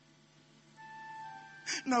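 Soft background music: a held, steady note enters faintly a little under a second in after a near-silent moment, and a man's voice starts speaking near the end.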